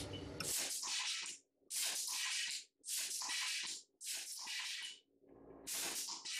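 Pneumatic sawdust-spawn inoculation gun firing in a run of short air hisses, about one a second, each shot blowing spawn into a drilled hole in a log.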